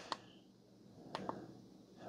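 Quiet handling sounds from a power bank held in the hand: two faint clicks at the start and a brief soft scuffle of ticks a little past the middle, as fingers move on the casing and its button.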